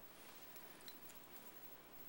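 Near silence: room tone with a couple of faint ticks from hands handling hair rollers and clips.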